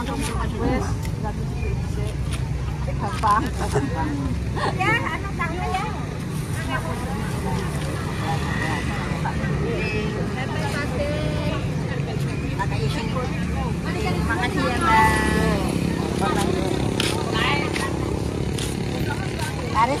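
Several people talking at once at an outdoor street market, over a steady low rumble of traffic and motorcycle engines.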